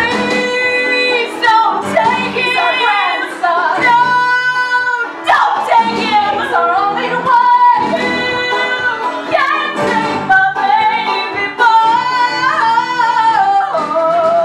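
A woman's solo voice singing a musical-theatre song with held, wavering notes, over a live band accompaniment.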